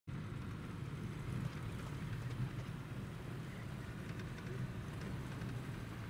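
Truck engine and road noise heard from inside the cab while driving, a steady low hum with no change in pace.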